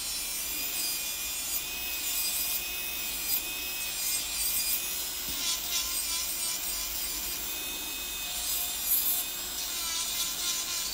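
Electric nail drill running with a steady high whine, its cone-shaped bit grinding old sculpted acrylic gel off a fingernail with a gritty, rasping hiss as it is drawn across the nail.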